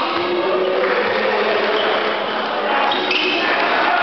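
Live basketball play in a large gym: players' voices calling out, a basketball bouncing and short shoe squeaks on the wooden floor, all echoing in the hall. The high squeaks come about three seconds in.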